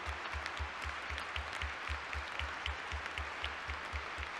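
A large audience applauding steadily, many hands clapping at once.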